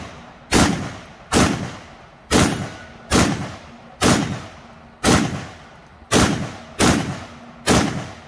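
HDM 1050 semi-automatic 12-gauge shotgun fired one-handed in steady succession: nine shots, roughly one a second, each cycling the action on light low-brass shells as the 10-round magazine runs empty.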